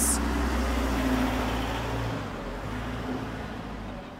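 Street traffic: a motor vehicle's low rumble passing close by, fading from about halfway through.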